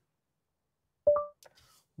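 Short rising two-note chime from the car's speakers, about a second in: Google Assistant through Android Auto signalling that it is listening after the steering-wheel voice button is long-held.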